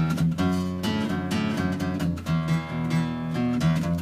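Acoustic guitar played by hand, a short riff of picked and strummed chords and held notes that change every fraction of a second, briefly pausing a little past halfway.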